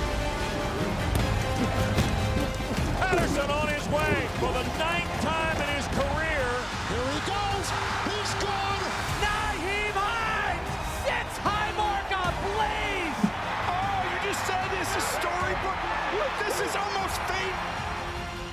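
American football highlight-reel soundtrack: music under excited shouting voices, with a sharp thud about thirteen seconds in.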